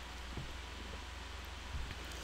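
Quiet room tone: a steady low hum and hiss, with two faint soft taps as a mug and paintbrush are handled.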